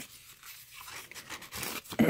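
Soft rustling and scraping of paper tags and card being handled and slid into a paper pocket of a journal page.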